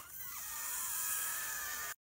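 A faint, steady hiss with no clear event in it: background noise between spoken lines.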